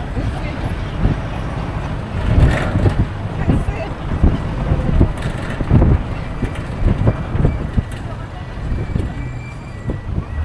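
Engine and road noise of a moving vehicle heard from inside it, a steady low rumble with uneven louder swells.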